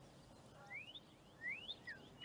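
A songbird calling faintly: two rising whistled notes about a second apart, then short falling notes near the end.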